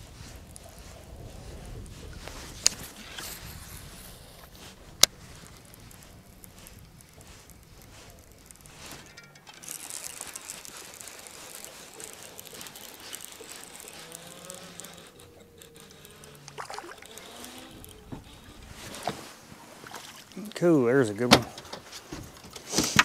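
Fishing reel and rod on a boat: a faint steady background with two sharp clicks in the first few seconds, then near the end a louder, fast-wavering whine as a fish is hooked and the reel is cranked.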